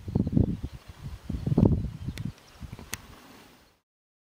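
Wind buffeting the microphone in uneven low gusts, strongest in the first two seconds and weaker after, with two faint clicks near the end. The sound cuts off suddenly just before the end.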